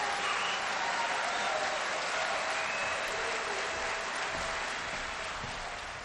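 An audience applauding steadily, the applause thinning and fading toward the end.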